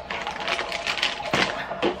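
Baby monitor's speaker giving out a rapid, irregular bubbling crackle, the noise it makes when the baby moves. A few sharper clicks stand out in the second half.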